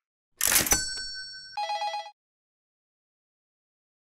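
Edited-in sound effect: a sudden crash-like burst with a bell ringing out, then a rapid trilling ring of several tones that cuts off about two seconds in.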